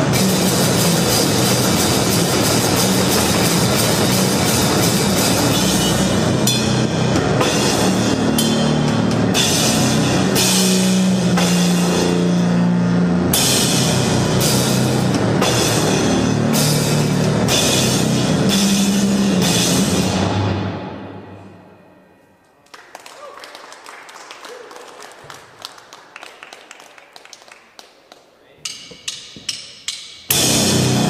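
Live grindcore/sludge band, drums and heavily distorted bass, playing loud and dense. About 20 s in the music dies away to a quiet noisy hum with scattered hits, then a quick run of sharp drum hits brings the full band crashing back in at the end.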